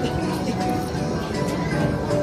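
Arcade game music and electronic sound effects from several machines playing at once, at a steady level, with faint voices in the mix.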